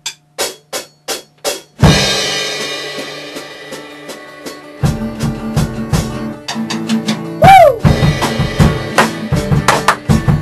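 Live rock band starting a song: a drummer's count-in of evenly spaced stick clicks, then the full band hits a chord that rings and fades for about three seconds. Drums and bass then come in with a driving beat, with a falling slide in pitch about three quarters of the way through.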